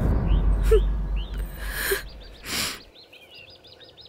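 Birds chirping: short high calls scattered through, then a rapid string of repeated chirps near the end. Under them a low rumble fades out about three seconds in, with two brief hissing swells.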